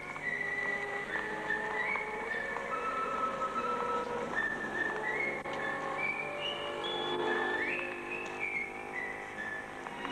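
Film soundtrack music: a whistled melody of held notes stepping up and down, with short slides between some of them, over a light instrumental accompaniment.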